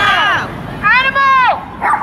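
A woman's voice shouting a drawn-out, high-pitched call through a megaphone, rising then falling, with shorter shouted syllables at the start.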